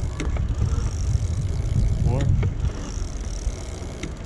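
Bafang BBS02 750 W mid-drive e-bike motor running at pedal-assist level three, its high whine coming and going in surges, over a steady low rumble.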